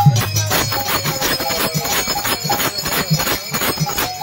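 Devotional kirtan music: a harmonium playing held, reedy chords over a steady beat of hand percussion and hand-clapping.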